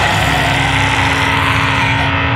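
Grindcore band's heavily distorted guitar and bass holding one loud, noisy chord, a sustained wall of distortion with no drum hits.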